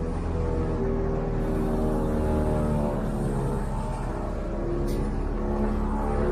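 Background music of slow, held low notes that shift in pitch about every second.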